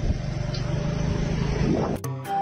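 Steady engine and road rumble of a moving road vehicle, heard from on board.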